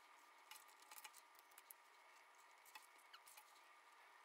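Near silence: faint room tone with a few light clicks and taps as a wooden skewer, plastic straws and a cardboard juice box are handled on a tabletop.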